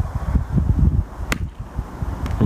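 A seven iron striking a tennis ball off tarmac: one sharp click a little over a second in. Wind rumbles on the microphone throughout.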